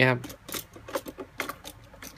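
Small plastic clicks and light rattles as a Tamiya Mini 4WD car is handled and set into the clear plastic shelf of a Tamiya Portable Pit carrying case: a scattered run of quick taps.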